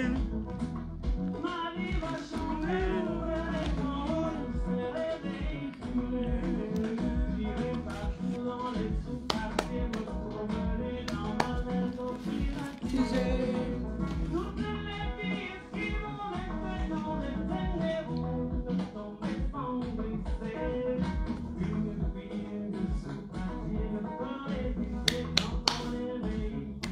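An old song with a singer and band, played from a screen and picked up through a phone's microphone. Its sound quality is poor and dated: 'le son est affreux', awful.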